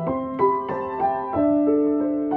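Solo piano playing a slow melody over held chords, a new note or chord struck every third to half second and each left ringing.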